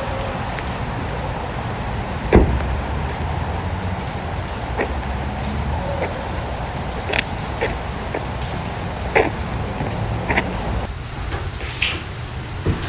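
Drama sound effects of a car arriving in the rain: rain and a low rumble, with a car door shutting about two seconds in, then scattered light knocks and clicks. The low rumble drops away near the end.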